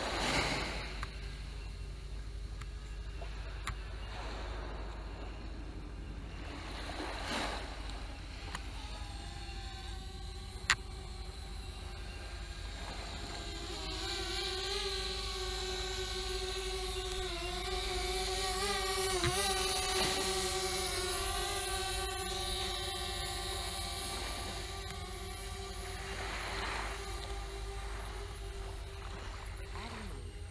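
DJI Spark quadcopter's propellers whining close by: a pitched buzz that swells from about halfway through, wavers in pitch as the drone manoeuvres, and eases off near the end. A single sharp click about eleven seconds in.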